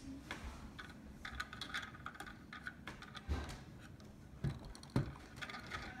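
Faint, scattered clicks and knocks of plastic Lego pieces and minifigures being handled and set in place, with a few louder knocks in the second half.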